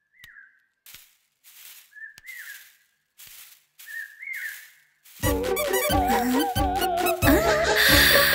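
Three short whistles, each a brief held note that bends up and then falls, with soft swishing noises among them. About five seconds in, background music with a steady beat and a melody starts.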